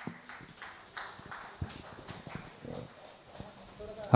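Scattered light taps and knocks, irregular, a few a second.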